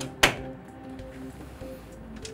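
Background music with short steady notes, and a single sharp click about a quarter second in from a screwdriver working a push-in terminal block in an electrical control cabinet.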